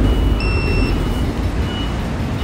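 Low, steady rumble of a vehicle engine with a high electronic reversing-alarm beep about half a second long near the start, followed by fainter short beeps.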